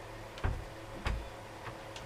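Two dull knocks about two thirds of a second apart, then a faint click, over a steady low hum: objects being handled and set down on a wooden galley counter.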